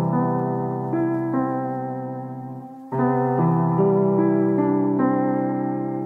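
Background music: soft electric piano chords, each struck and left to fade, with a new chord about three seconds in.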